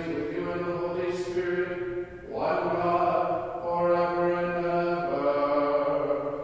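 Liturgical chant: voices singing long held notes on steady pitches, with a brief break about two seconds in and a change of note near the end.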